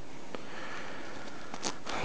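Steady low hiss of background noise, with one faint click about a third of a second in and a faint tick near the end.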